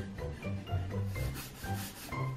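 Pencil scratching and rubbing across paper during drawing, growing stronger in the second half, over light background music.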